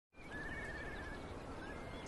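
Faint outdoor ambience: a low wind rumble, with a distant wavering animal call lasting about a second near the start and a few short chirps after it.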